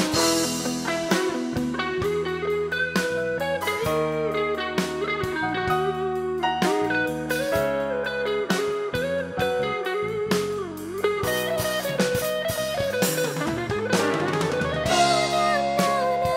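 A pop-rock band plays an instrumental passage with no singing. A guitar line with bending, sliding notes leads over bass, keyboard and drum kit.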